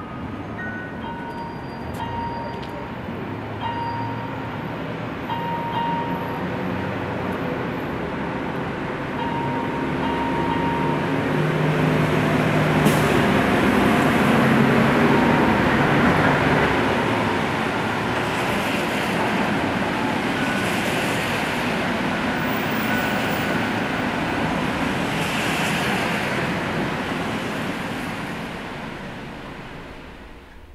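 A long rushing noise that swells to a peak about halfway through and then fades away, with a few faint sparse high notes sounding over it early on.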